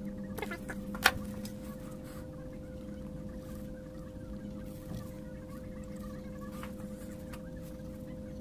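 A steady electrical hum from workshop equipment, with a few small clicks as the cell tabs of a lithium-ion battery pack are handled during soldering. The sharpest click comes about a second in.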